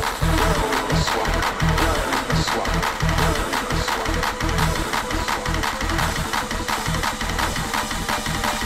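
Early rave dance music mixed from vinyl records on turntables, with a busy percussive beat and heavy bass hits.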